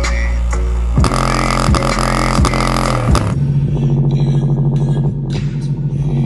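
Bass-heavy hip-hop played loud through a portable speaker, with deep sliding bass notes. A little over three seconds in, the sound changes abruptly to a steady, pulsing low bass tone.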